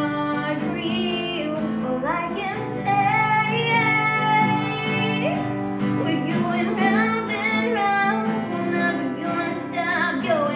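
A female voice singing with acoustic guitar accompaniment.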